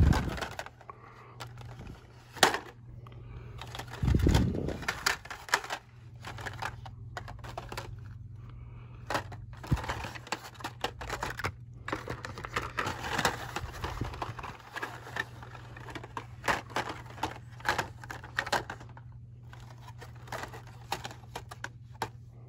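Hot Wheels cars in plastic blister-pack cards being flipped through on metal peg hooks, making many irregular clicks and clacks with some crinkling of plastic. A steady low hum runs underneath.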